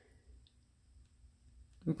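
Near silence: room tone with a couple of faint clicks, then a woman's voice starts near the end.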